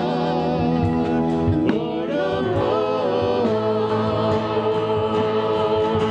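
Live worship song: several voices singing long, wavering notes over acoustic guitar and band, with a light, steady percussion tick.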